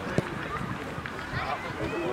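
A football kicked, a short sharp thud right at the start, followed by distant voices of players and coaches calling across the pitch.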